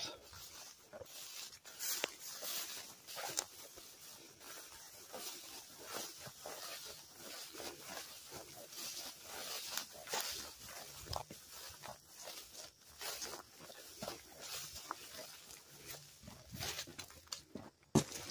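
Footsteps through tall grass and weeds, with stalks and brush rustling against legs and the handheld camera, in an irregular walking rhythm.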